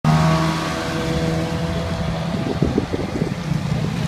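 Ferrari 360's V8 engine running at a steady note as the car pulls away at low speed, loudest at the start. The engine note dies away about halfway through, leaving wind buffeting the microphone.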